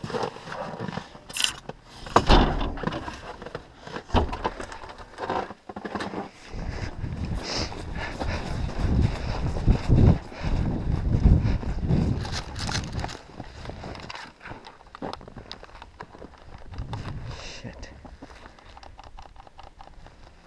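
Clicks, knocks and rattles of an airsoft rifle and gear being carried, with footsteps in snow and a low rumble of movement noise on the body-worn camera, loudest in the middle.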